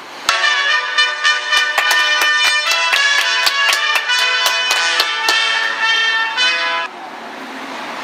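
A short piece of bright, fast-moving music with many quick notes. It starts suddenly just after the beginning and cuts off abruptly about seven seconds in.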